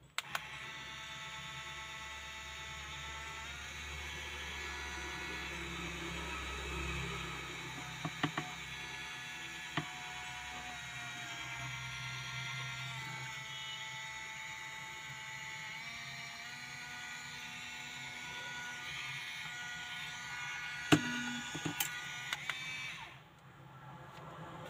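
A handheld 3D pen's small feed motor runs with a steady whine that shifts up or down in pitch a few times. A few sharp clicks come in between, the loudest about three seconds before the end. The motor stops shortly before the end.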